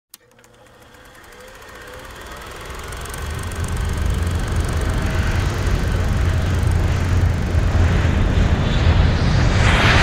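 A low rumble fades in over the first few seconds and then holds steady, while a hiss over it swells and grows brighter near the end, building into the start of the music.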